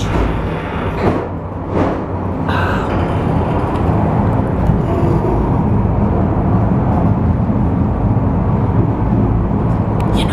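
Cable car climbing uphill through a rock tunnel, heard from inside the cabin: a loud, steady low rumble with a mechanical hum, and a few knocks in the first few seconds.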